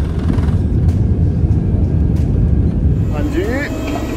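Cabin noise of an airliner rolling on the runway: a loud, steady low rumble of jet engines and wheels. It cuts off about three seconds in, and a man's voice takes over.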